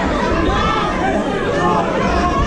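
Spectators' voices: many people talking and calling out over one another at once, a steady babble of overlapping voices.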